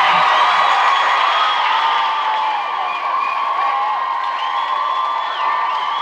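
Studio crowd of young fans cheering and screaming with high whoops at the end of a live song. It starts loud and eases a little toward the end.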